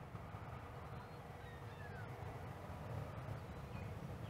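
Faint bird calls, a few short falling cries, over a low steady outdoor rumble.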